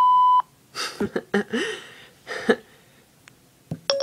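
iPhone 4S Siri tones: a short, loud, steady beep at the start and a shorter, lower beep near the end. In between, a person laughs.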